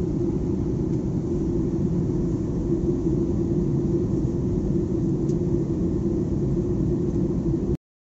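Jet airliner cabin noise in flight: a steady rumble of engines and airflow with a constant low hum, cutting off suddenly near the end.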